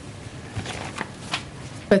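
Paper rustling as sheets are handled, with a few short crackles, then a man's voice starts right at the end.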